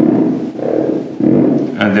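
Creality stepper motor's shaft turned by hand with its pins 3 and 6 shorted together: a loud pitched growl in about three surges. The changed sound comes from the shorted coil braking the rotor, and shows that those two pins are the motor's second coil.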